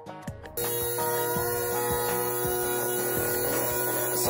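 Air-powered orbital sander running steadily on a plastic ATV fender. It comes in abruptly about half a second in as a loud, even hiss with a steady whine, over background music.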